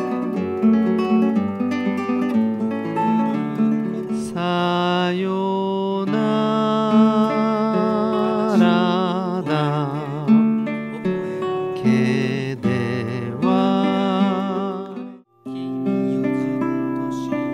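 Nylon-string classical guitar fingerpicked with a thumb pick in a three-finger pattern over G7 and C chords. From about four seconds in, a wavering melody with strong vibrato rides over the picking. Near the end the playing stops briefly and a new fingerpicked passage begins.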